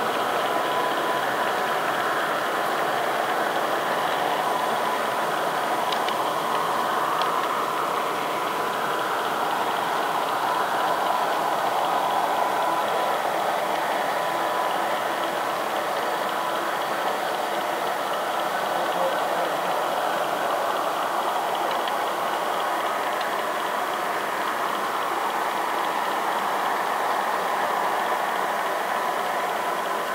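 Model train running on layout track, heard from a camera riding on the train: a steady rolling noise of small wheels on rail joined by motor hum.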